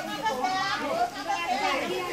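Voices of several people talking, children's voices among them.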